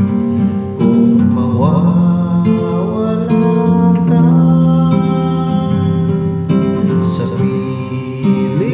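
Acoustic guitar strumming slow chords behind a man singing a ballad in Tagalog.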